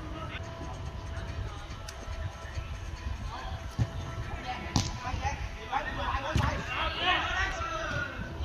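A football being kicked on an artificial-turf pitch: a few sharp thuds, the two loudest in the middle of the stretch, among players' distant shouts.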